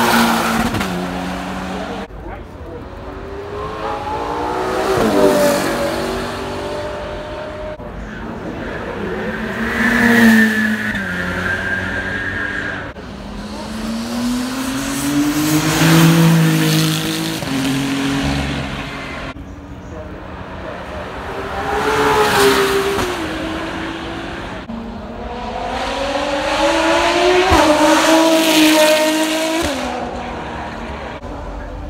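About six supercars and racing cars driving past one after another under hard acceleration, each engine note climbing through the revs as the sound swells and fades. They include a Ferrari Roma Spider and the Ferrari 499P hypercar with its twin-turbo V6 hybrid.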